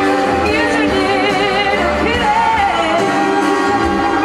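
Live band music from guitars, bass and drums, with a wavering lead melody sung or played above it.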